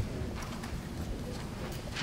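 Knocks, thumps and shuffling of a person sitting down at a table with a microphone, moving the chair and setting down papers.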